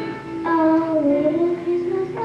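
A young girl singing a slow melody into a microphone, her voice coming in strongly about half a second in with long held notes that slide between pitches.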